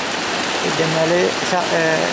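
Steady rushing noise of a rain-swollen, muddy mountain stream in flood, running high and fast. A man's voice speaks briefly over it in the second half.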